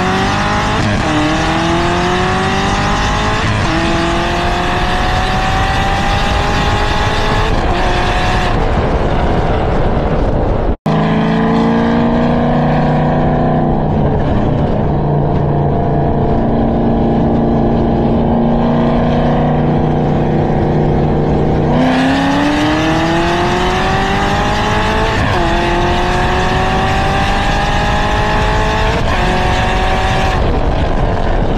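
A car engine pulling at full throttle during a roll race, its pitch climbing through the gears with a short dip at each upshift. It settles to a lower, steady note while cruising, then a second full-throttle pull climbs through more upshifts, with a brief dropout in the sound about eleven seconds in.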